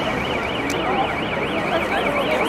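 A high electronic alarm tone warbling rapidly up and down, about three cycles a second, over crowd chatter.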